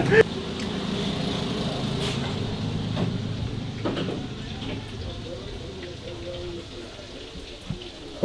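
A low, steady rumble that slowly fades, with faint voices in the background and a few soft clicks.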